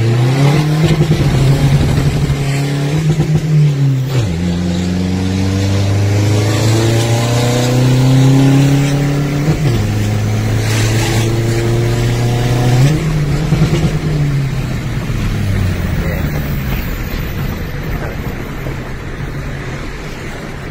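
Isuzu 1.9-litre turbo-diesel engine with an upgraded aftermarket turbo, heard from inside the cab under hard acceleration. The engine note climbs and drops sharply at two upshifts, about four and ten seconds in, then winds down gradually in the last several seconds.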